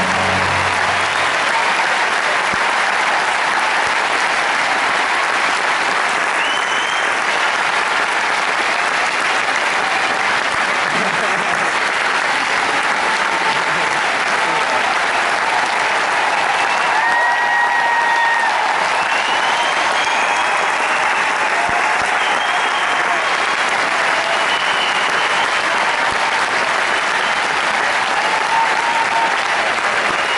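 Large arena audience applauding and cheering, a dense steady roar of clapping with shouts and a shrill whistle mixed in; the orchestra's last sustained chord stops about a second in.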